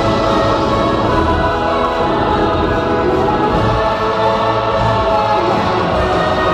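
Choral music from the projection-mapping show's soundtrack: a choir holding long, sustained notes over a low accompaniment.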